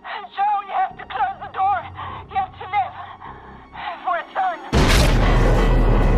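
A woman's short gasping, whimpering breaths heard through a walkie-talkie's narrow, thin sound, in quick falling cries. About three-quarters of the way through, a sudden loud, deep rumbling blast cuts in and keeps going: the reactor breach blowing through the corridor.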